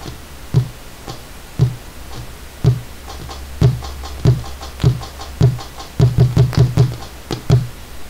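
Sampled tambora drum strokes from a gaita zuliana percussion set, played from drum pads. Single low drum hits come about once a second, then a quick run of about six strokes around six seconds in, and two more near the end.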